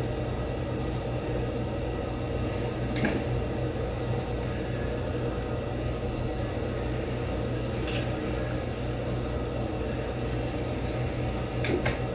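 Steady low electrical hum in a small room, with three faint clicks spread through it from a flat iron being handled against the hair.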